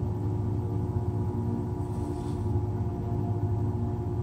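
Electric potter's wheel motor running with a steady hum while the wheel spins.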